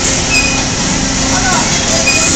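Kiddie bi-plane ride running: a steady mechanical hum and rumble, with voices faintly in the background.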